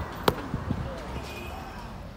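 A sharp knock about a quarter of a second in, then two softer knocks, over a low steady hum inside a car in slow traffic.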